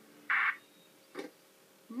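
A walkie-talkie's short burst of static as the call ends, then a faint click about a second later.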